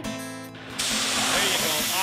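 Bear spray canister discharged in one steady hiss lasting about a second, starting a little under a second in.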